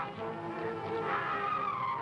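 Film soundtrack music with held notes, and a high sliding tone that falls in pitch over the second half.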